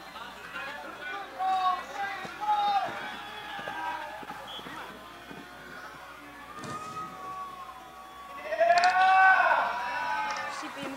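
Voices calling out across a football pitch during an attack, breaking into a loud burst of shouting near the end as a goal goes in.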